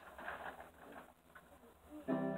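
A quiet pause between songs: faint, indistinct room sounds with a few soft, brief noises, no music playing.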